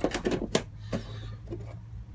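Clear hard-plastic propagator lid being handled on a seed tray, giving a run of irregular clicks and light knocks.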